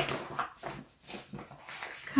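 Plastic project bag and paper pattern sheets rustling and crackling as they are handled, in a quick run of short rustles.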